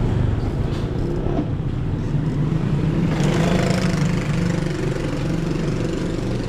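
Motorcycle engine idling steadily, swelling briefly about halfway through.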